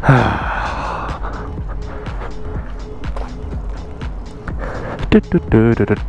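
A long breathy sigh at the start, over background music.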